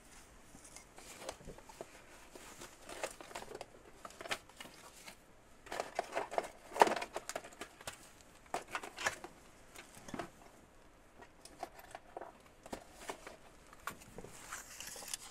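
Off-camera rummaging while hunting for a box of staples: scattered rustles and small knocks of things being handled, the loudest knock about seven seconds in.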